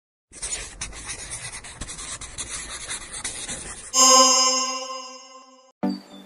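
Scratchy scribbling of a pen or pencil on paper for about three and a half seconds, followed by a single bright chime that rings out and fades; a music track with a beat starts right at the end.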